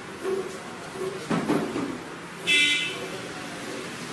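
A short high-pitched toot about two and a half seconds in, over faint voices in the room.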